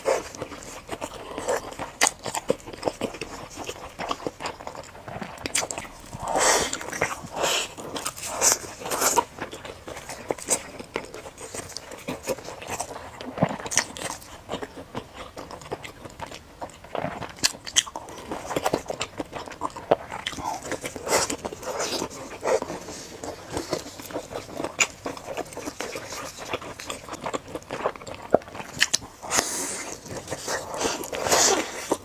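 A person biting and chewing fried food close to a clip-on microphone: irregular crunches and mouth sounds, busier in two stretches.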